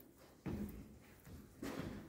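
Quiet pause with two soft, short rustling or shuffling noises, about half a second in and again near the end: movement or handling sounds close to the microphone.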